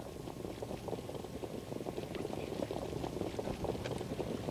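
Hoofbeats of a field of Standardbred harness horses coming up to the start: a dense, irregular low patter that grows slowly louder.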